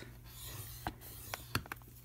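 A thin wooden stylus drawn along the groove of a plastic scoring board, faintly scratching a fold line into thin cardboard, with a few light clicks.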